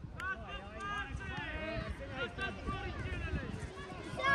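Several children's voices calling and shouting at once across a football pitch, high-pitched and overlapping, over a low rumble on the microphone.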